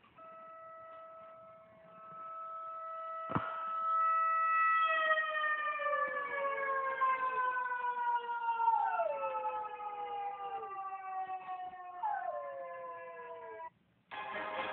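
A siren heard through a phone's speaker: a steady tone that swells over the first few seconds and then slowly falls in pitch as it winds down. A dog howls along with it, its howls sliding down in pitch several times.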